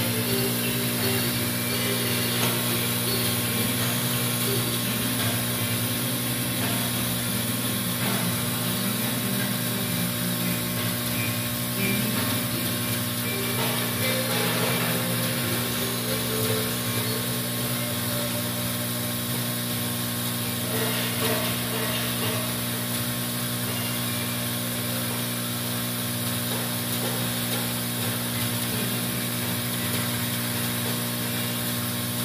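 Vibratory bowl feeder running, giving a steady hum as Teflon washers are shaken along its stainless steel spiral track.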